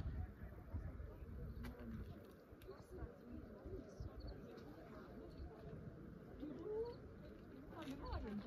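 Faint outdoor ambience: indistinct distant voices over a low, uneven rumble.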